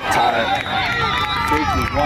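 Crowd of spectators shouting and cheering, many voices yelling over one another.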